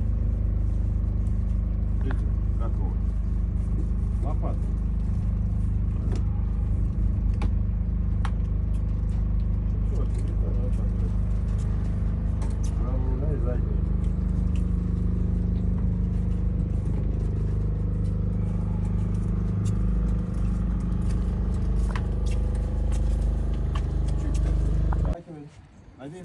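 Houseboat's motor running steadily with a low drone as the boat moves slowly across the water. The drone cuts off suddenly near the end.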